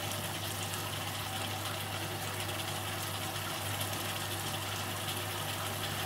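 Honey caramel sauce cooking in a roasting pan on the stove: a steady, even hiss over a low hum.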